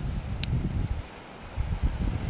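Wind buffeting the microphone in low, uneven gusts, with one sharp metallic click about half a second in from a carabiner being handled.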